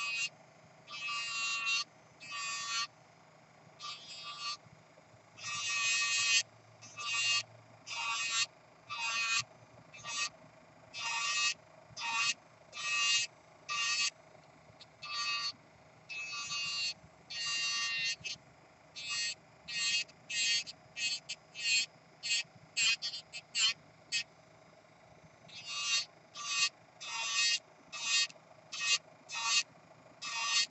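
Kupa Manipro electric nail drill (e-file) filing an acrylic nail. Its faint steady running hum is broken by short, loud grinding whines, roughly one a second, as the bit is pressed to the nail and lifted off.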